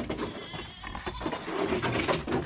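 Farm animals calling from a pen.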